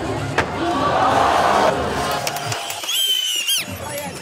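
Skateboard contest crowd cheering and yelling, with a sharp clack of a skateboard about half a second in. Past the halfway point the crowd's roar drops away, leaving a few shrill, gliding whoops.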